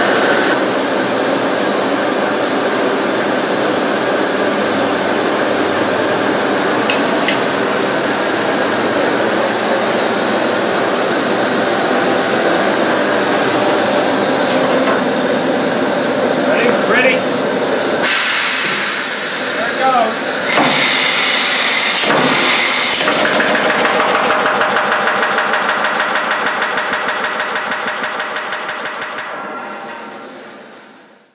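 Pneumatic riveting equipment running loud and steady with a hissing, mechanical noise. In the last few seconds a rapid, regular pulsing sets in as the 1880 Allen portable pneumatic riveter drives a red-hot rivet.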